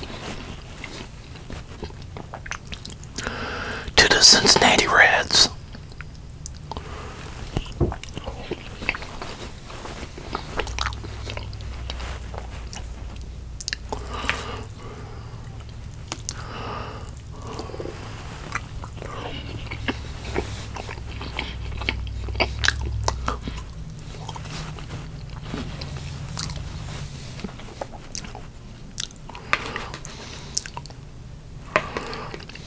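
Close-miked chewing and wet mouth sounds of a man eating meatloaf, with small clicks of a metal fork against the plate. About four seconds in there is a brief, louder burst of his voice.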